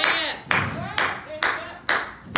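Rhythmic hand-clapping, about two claps a second, keeping a steady beat, with short voiced calls between the claps.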